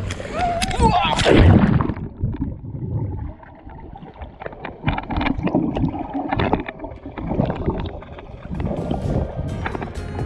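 A splash as the action camera goes under the pool surface about a second or two in, then muffled underwater sound with the highs cut off: swimming strokes and exhaled bubbles knocking and gurgling irregularly.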